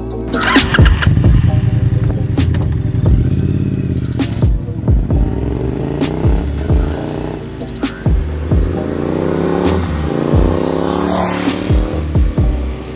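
Triumph Street Twin's 900 cc parallel-twin engine accelerating, its pitch rising in two long pulls with a gear change between them, under background music with a steady beat.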